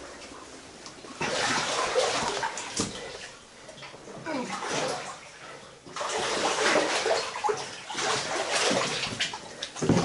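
Water sloshing and splashing as someone wades through a flooded tunnel, coming in uneven surges with a quieter stretch of a few seconds in the middle.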